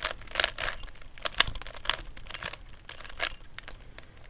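A 3x3 Rubik's Cube's plastic layers being turned by hand, making a run of quick clicks and scrapes that grow sparser in the second half.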